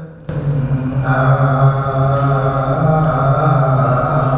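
Buddhist liturgical chanting by a monk into a microphone: a low voice reciting at a nearly level pitch. It starts abruptly just after the beginning.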